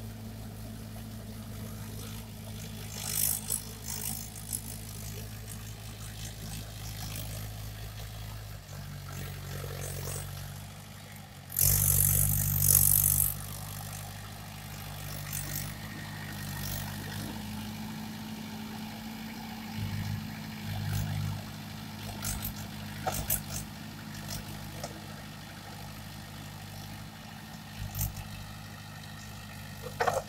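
Diesel tractor engine running steadily under load while working a flooded paddy field with cage wheels and a tined implement; its note shifts about nine and twelve seconds in. A loud burst of noise lasting a couple of seconds comes around twelve seconds in, with scattered short clicks and rustles.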